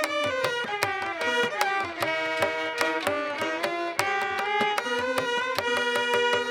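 Carnatic instrumental music: violins and veena playing a gliding melody together over a steady rhythm of mridangam and ghatam strokes.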